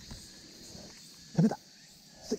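A person's voice: one short exclamation about one and a half seconds in, slightly rising in pitch, over a faint steady high hiss.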